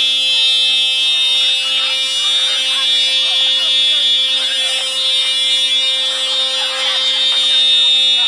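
A steady high-pitched electrical buzz with many overtones runs unbroken throughout, under the voices of several people talking.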